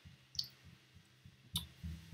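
Two faint short clicks about a second apart, over quiet room tone.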